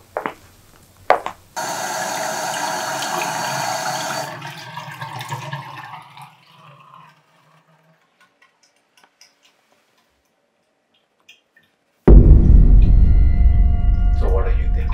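Two short knocks, then a toilet flushing: a rush of water that starts suddenly just over a second in and trails off over several seconds. Near the end, loud low dark music starts abruptly.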